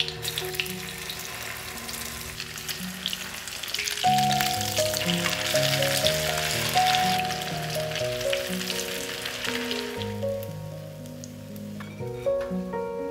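Food frying in hot vegetable oil in a pan: a dense sizzle with crackles that dies away about ten seconds in, heard over background music.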